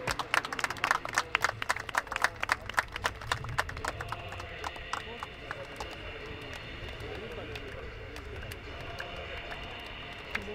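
Sharp hand claps and palm slaps, many a second for the first four seconds and then thinning out, over voices talking on an open football pitch.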